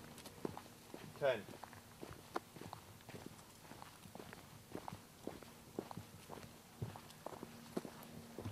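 Footsteps of hikers walking at a steady pace on a dirt path, short soft knocks roughly every half second.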